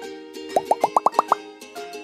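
Cartoon-style editing sound effect: seven quick rising bloops in a run, each pitched higher than the last, over light background music.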